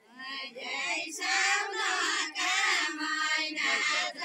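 A group of women singing a Deuda folk song together without instruments, several high voices in short sung phrases broken by brief pauses about once a second.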